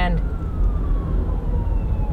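A police siren heard faintly from inside a moving car: one slow, falling wail over the low rumble of road noise in the cabin.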